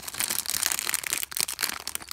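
Thin clear plastic bags of LEGO pieces crinkling and rustling continuously in quick, dense crackles as the parts are handled.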